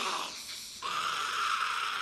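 Gollum screaming in the film's soundtrack: a short cry, then one long, sustained scream starting about a second in.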